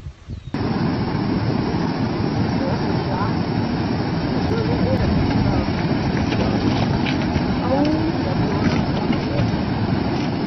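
A loud, steady rush of fast-flowing floodwater that starts abruptly about half a second in, with faint voices underneath.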